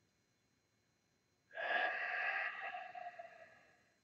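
A man taking one slow, deep breath through the mouth, starting about one and a half seconds in and fading out over about two seconds, as a calming breathing exercise.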